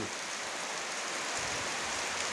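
Steady rain falling on tree leaves and waterlogged, puddled ground: an even, unbroken patter.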